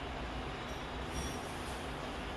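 Steady, even background noise, a hiss with a low rumble, with no distinct events.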